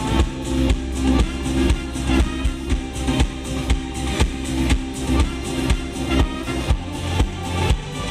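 Live band music: trombone, trumpet and saxophone playing held notes together over a steady drum beat.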